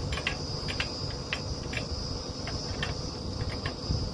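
Steady high-pitched insect trill, with scattered short sharp clicks over a low rumble.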